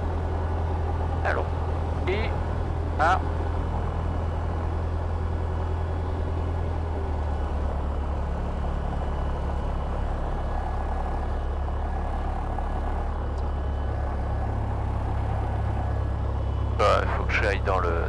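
Robin DR400 light aircraft's piston engine running at taxi power, heard inside the cockpit as a steady low drone. Its note shifts slightly about seven seconds in and again around fourteen seconds.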